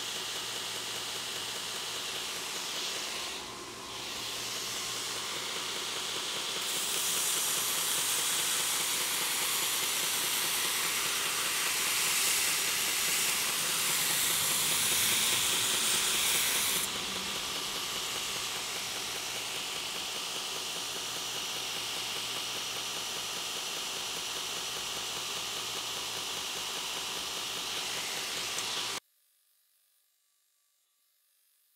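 A 2x72 belt grinder running a 100-grit ceramic belt, with a steel knife blade held against the belt over a soft-backed platen. It makes a steady motor-and-belt hiss that grows louder and harsher for about ten seconds in the middle while the blade is worked, then cuts off suddenly near the end.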